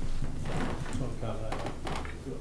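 Indistinct, quiet speech over a low steady hum, with a few short knocks or clicks of handling noise near the end, like papers or objects moved on a table close to a microphone.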